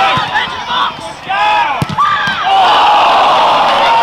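Football crowd shouting, with a sharp thud near the middle, then cheering steadily through the last second and a half.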